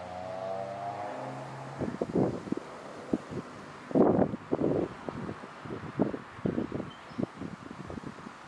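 A car engine running and slowly rising in pitch as it accelerates, ending about two seconds in. After it come irregular muffled bursts of buffeting, like wind gusting on the microphone.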